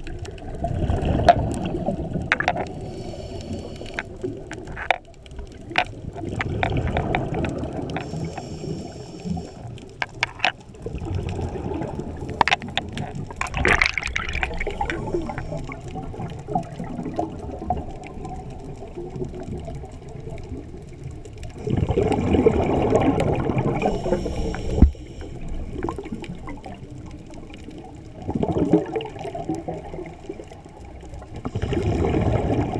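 Scuba diver breathing through a regulator underwater: several bubbly, gurgling exhalations of a few seconds each, with quieter stretches between and scattered sharp clicks.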